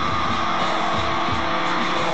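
Live rock band playing loud, dense, distorted music, with electric guitar and drums.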